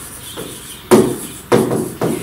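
Two sharp knocks, about half a second apart, of a pen tapping against the surface of an interactive display board while writing on it.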